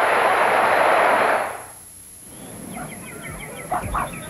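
Boxing-arena crowd noise, a loud steady hubbub that fades out about a second and a half in; then a much quieter stretch with a few faint high chirps.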